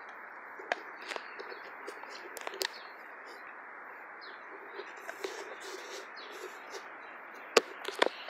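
Cane Corso–pit bull mix dog gnawing a wooden stick: scattered small clicks and cracks of teeth on wood, with one sharp snap near the end, over a steady outdoor hiss.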